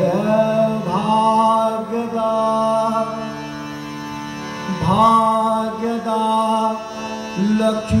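Indian classical vocal music: a male singer holds long notes, sliding into each new phrase, over a tanpura drone with harmonium accompaniment. New phrases begin at the start, about a second in, near five seconds and just before the end.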